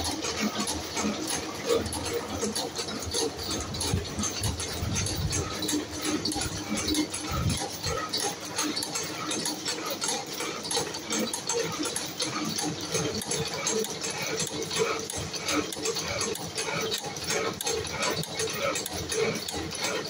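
Spring coiling machine running, feeding, coiling and cutting steel wire into compression springs with a rapid, steady metallic clatter.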